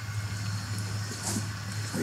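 A low steady hum under a faint even hiss.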